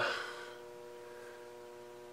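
Faint steady hum with a few constant tones, as of a machine or electrical equipment idling in a workshop, after the trailing end of a spoken word.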